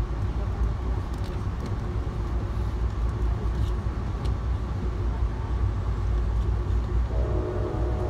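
Steady low rumble of a passenger train at speed, heard from inside the coach, with a few faint clicks. Near the end the train's horn starts to sound.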